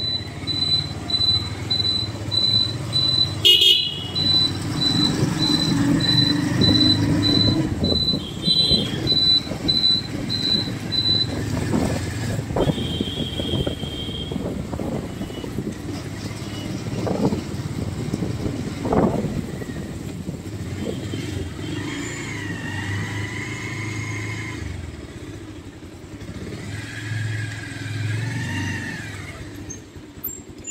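A moving road vehicle's engine and road noise rumbling steadily. For the first ten seconds or so a high electronic beep repeats a few times a second, and short horn toots sound a few times later on.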